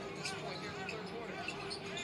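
An NBA game broadcast playing low: a commentator talking over arena noise, with a basketball being dribbled on the court.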